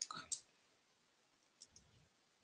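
Computer keyboard keystrokes being typed, faint: a few clicks in the first half second, then near quiet, then two more clicks near the end.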